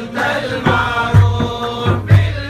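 Group of voices chanting a devotional Islamic litany together, over a drum struck in a steady beat about twice a second.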